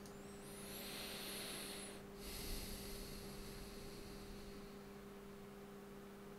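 A person's breath close to the microphone, a soft inhale-like swell with a faint whistle, then a sudden exhale about two seconds in that fades away, over a steady low electrical hum.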